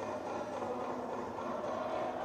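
Faint, steady ballpark background sound from a televised baseball game, with a faint thread of music running through it.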